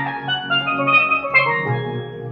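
Steelpan struck with mallets playing a melody, several ringing notes a second, over sustained electronic keyboard chords.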